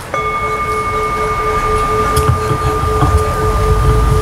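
A Buddhist bowl bell struck once, its clear tone ringing on and slowly wavering as it sustains. It is the bell struck to signal the assembly's bows.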